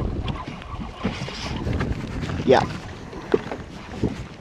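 Wind buffeting the microphone over choppy open water, with a steady low rumble and scattered small knocks and splashes against a boat's hull. A short exclaimed "yeah" comes midway.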